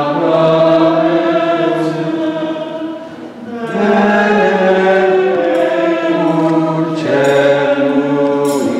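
Voices singing a slow sacred hymn in long held notes, with a brief breath between phrases about three and a half seconds in.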